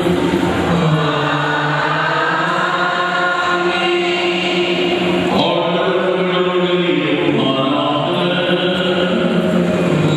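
Slow sung liturgical chant with long held notes that glide from one pitch to the next, without a break.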